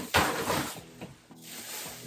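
Black plastic garbage bag rustling and crinkling as it is carried and lifted, loudest in the first half-second or so and then quieter, over faint background music.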